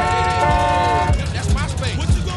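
A car horn held down, a steady multi-tone blare that stops a little over a second in, over people shouting and repeated low thumps.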